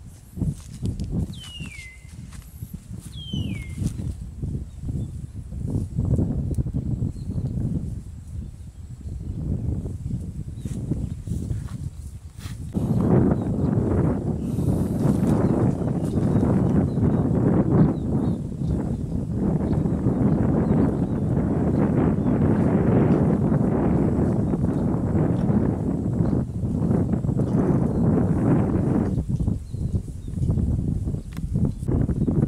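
Water buffalo grazing in dry grass: a steady crackle of grass being torn and chewed, getting louder and denser about halfway through. Two short falling bird calls near the start.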